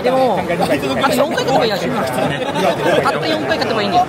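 Speech only: a man talking in Japanese over the chatter of a crowd in a large hall.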